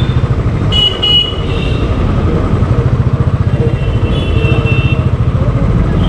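Motorcycle engine running under the rider with a steady low thudding, while vehicle horns honk in the surrounding traffic: a short honk about a second in and a fainter one around four to five seconds in.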